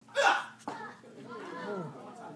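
Voices: a short loud vocal burst at the start, then overlapping talk, with a single sharp knock about two-thirds of a second in.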